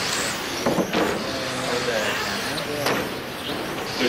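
Radio-controlled electric touring cars racing on an indoor carpet track: motors whining as the cars pass, with a few sharp knocks.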